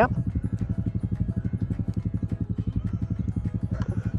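A small vehicle engine idling steadily with a fast, even beat.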